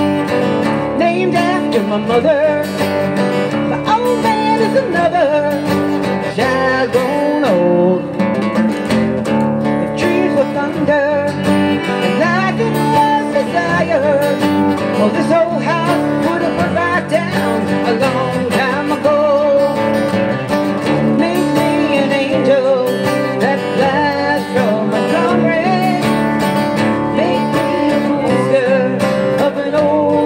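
Live acoustic country music: a fiddle melody over strummed acoustic guitar and bass, playing on without a break.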